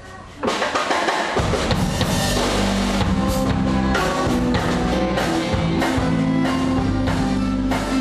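A live band starts a song about half a second in: a drum kit with acoustic and electric guitars, the low end filling in about a second later and the band then playing steadily.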